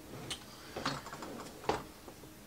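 Hard plastic Pelican 1606 carry case being tipped upright on a table, its shell and hardware giving a few clicks and knocks, the sharpest about three-quarters of the way through.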